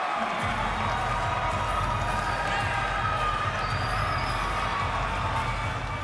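Arena crowd cheering and clapping, with a steady low rumble underneath.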